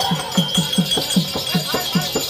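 Therukoothu folk-theatre accompaniment: a hand drum beats a fast, even rhythm of about five strokes a second, each stroke dropping slightly in pitch, with metallic jingling over it and a steady high note held throughout.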